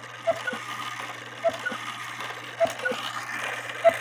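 Hubert Herr cuckoo quail clock movement ticking steadily, with small clicks in pairs about every second and a bit, over a low steady hum.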